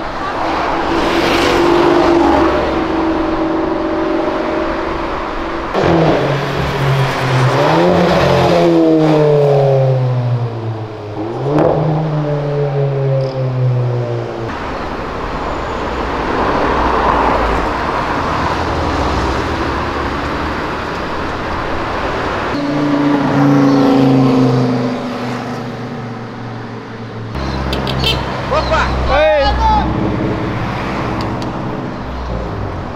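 Cars accelerating past on a city street, their engines revving with pitch climbing, dropping at a gear change and climbing again. The loudest pass comes from about six to fourteen seconds in, another follows a little past twenty seconds, and a short sharp rev comes near the end.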